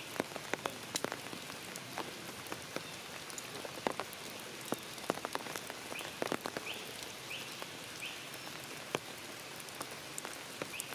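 Rain falling through forest foliage: a steady hiss of rain with many irregular sharp drips striking leaves. A few short high chirps from an animal come about six, seven and eight seconds in.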